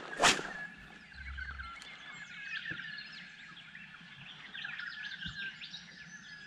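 Many birds chirping and calling together from the surrounding bush, a steady scatter of short, quick notes. A single brief, sharp whoosh sounds about a quarter-second in.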